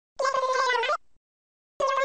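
Two high, drawn-out meow-like calls, each holding a fairly steady pitch and dipping at the end. The first lasts under a second; the second starts near the end. Each cuts off sharply into dead silence.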